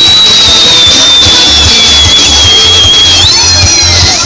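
Loud live folk dance music: a long, high held tone that sinks slowly and steps back up near the end, over a low, steady drum beat.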